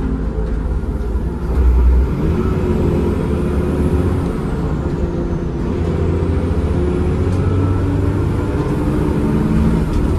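Cummins ISCe 8.3-litre diesel of a Transbus ALX400 Trident double-decker bus with a ZF Ecomat automatic gearbox, heard from inside the bus as it drives along. A brief louder low thud comes about a second and a half in.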